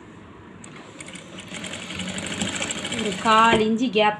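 Sewing machine stitching fabric: it starts about half a second in and runs with a rapid, even stitching rattle that grows louder as it goes. A woman's voice comes in near the end.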